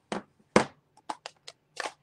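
Plastic ink pad cases knocking and clicking as they are set down and handled on a craft mat: a sharp knock, a louder one about half a second in, then several lighter clicks.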